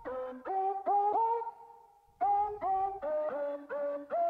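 Show intro music: a synthesized, voice-like lead plays short repeated notes that each scoop up in pitch, in two phrases with a brief pause about two seconds in.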